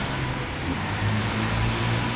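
A motor vehicle's engine running steadily with a low hum, slightly louder in the second half.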